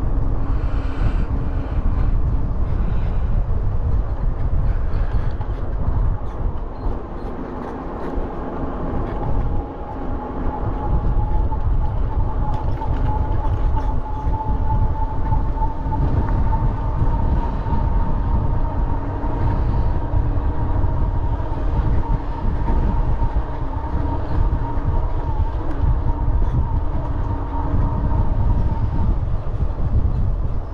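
Wind buffeting the microphone of a moving bicycle: a loud, uneven low rumble. A faint steady whine joins it about a quarter of the way in, rises slightly in pitch and stops near the end.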